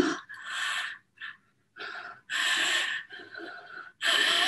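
A woman breathing heavily in three ragged, audible breaths, the one about two seconds in the longest and loudest: acted panic breathing.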